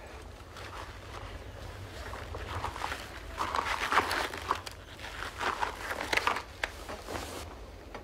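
Soft, irregular crinkling and squishing of a latex face mask being pressed into place, over a low steady rumble.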